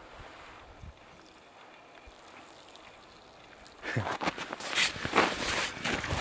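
A faint, still outdoor hush. About four seconds in, it gives way to a run of irregular crunching steps in packed snow that grows louder toward the end.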